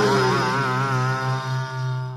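Crust punk track's closing chord ringing out on distorted electric guitar over a held bass note, its pitch wavering, with a note sliding downward near the start.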